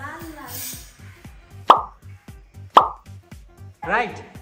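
Two loud cartoon-style plop sound effects about a second apart, laid over background music with a steady low beat.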